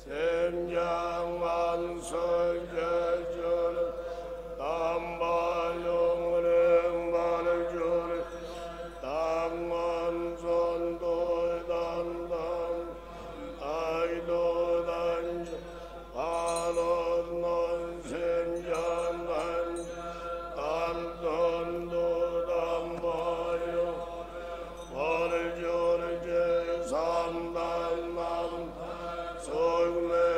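Buddhist monks chanting prayers together on one steady reciting note, in phrases a few seconds long that each begin with a quick rise in pitch onto the held tone.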